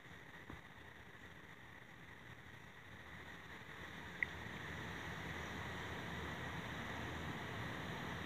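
Faint steady background hiss that grows a little louder over the second half, with a tiny tick near the start and one short sharp click about four seconds in.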